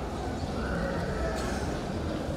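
A pause in a man's speech, filled by low room rumble and a faint, brief voice-like sound in the middle.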